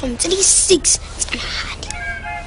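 Speech only: a man talking, with sharp hissing s-sounds.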